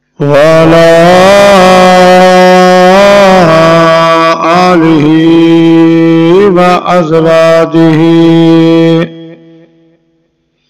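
A man's solo voice chanting an Arabic invocation in long, drawn-out melodic notes that glide from pitch to pitch, stopping about nine seconds in with a short trailing echo.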